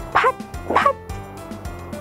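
A woman's voice calling out two short splash words, 'phach! phach!', over steady background music.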